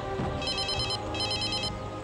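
Electronic telephone ringtone: two trilling rings, each about half a second long, over background film music.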